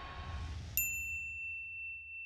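Production-company logo sting: a low rumbling swell, then a single bright ding just under a second in that rings on as one high tone and slowly fades.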